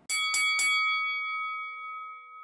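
Boxing ring bell struck three times in quick succession, then ringing on and slowly fading.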